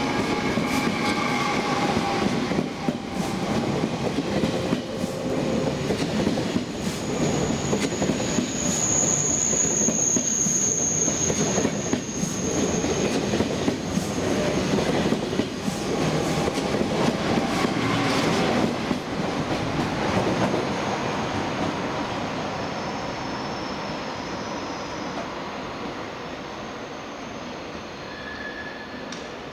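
TGV high-speed train pulling out slowly close by: wheels rolling and clacking over points and rail joints, with a high wheel squeal from about seven to twelve seconds in. The sound fades over the last several seconds as the train draws away.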